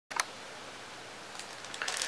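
A single sharp click just after the start, then a faint steady hiss. In the last half second come light rustling and small taps as a pad of Fedrigoni Tintoretto paper is handled and slid across the table.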